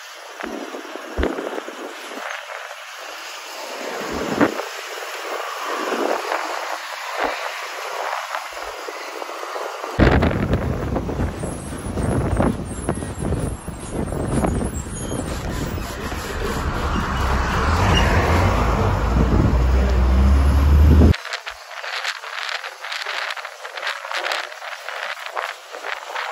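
Road and wind noise of a moving city bus heard through its open side window, with the bus running at speed. About ten seconds in, a deep rumble cuts in and grows louder for some ten seconds, then stops abruptly.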